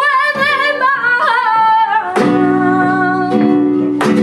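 A female flamenco singer sings a wavering, ornamented line over flamenco guitar. About two seconds in, a strummed guitar chord rings out under a held sung note.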